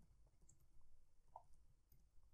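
Near silence with a few faint clicks of computer keys being typed.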